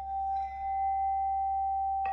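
Mani singing bowl, struck with a wooden mallet, ringing on in one steady high tone with fainter overtones above it.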